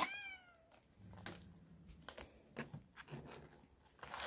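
A cat gives one short meow that falls in pitch, right at the start. After it come a few faint crinkles and ticks from a plastic pouch being worked open.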